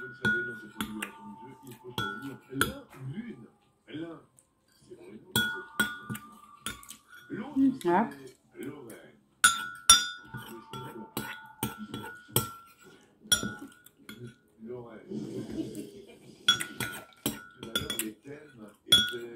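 Metal spoon clinking against a ceramic soup bowl as soup is scooped. There are many short strikes, each with a brief ring.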